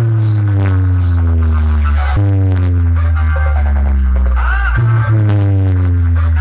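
A DJ competition sound box with eight bass cabinets playing hard-bass electronic dance music very loudly. Long, deep bass notes slowly slide down in pitch, with a new one starting about two seconds in and again near five seconds.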